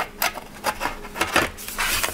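Aluminium bottom case of a MacBook Air being fitted and pressed down onto the laptop's body: a few light, irregular clicks and taps of metal with some rubbing as the panel seats.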